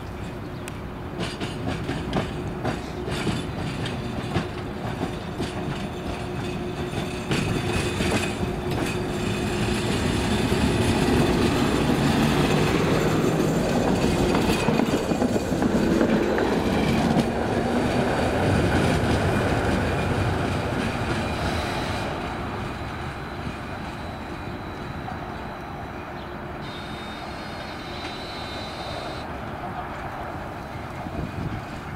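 Tram approaching and passing close by: its wheels click over the rail joints as it nears, the running noise swells to its loudest around the middle as the car goes past, then fades away. A thin high squeal sounds briefly near the end.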